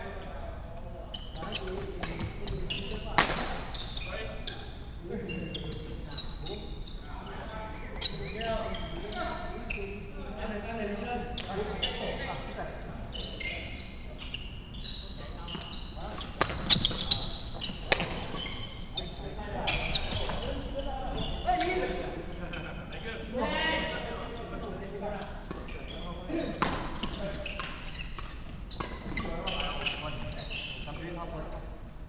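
Badminton doubles rally in a large hall: sharp cracks of rackets striking the shuttlecock at irregular intervals, with footsteps and shoe squeaks on the wooden court floor, all echoing in the hall.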